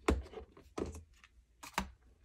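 A few separate sharp clicks and taps of fingernails and paper envelopes against a clear plastic envelope box, the first at the very start, another near the middle and a last one near the end.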